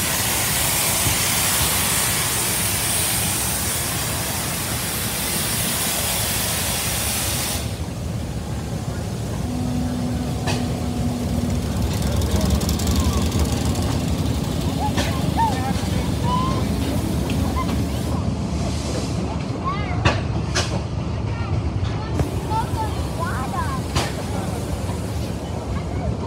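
Keck-Gonnerman 22-65 steam traction engine blowing off steam in a loud, steady hiss that cuts off suddenly about eight seconds in. After that a low, steady rumble from the working engine remains, with crowd voices over it.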